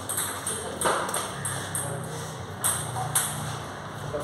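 Table tennis balls clicking off bats and tables, a few scattered hits, over a low steady hum.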